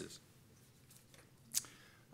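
A single short, sharp click about one and a half seconds into an otherwise quiet pause in a small room.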